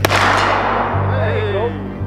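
A flintlock black-powder muzzleloading rifle firing a single shot: a sharp report at the very start that rings out and dies away over about a second and a half, with a faint crack just before it. Background music with a steady beat runs underneath.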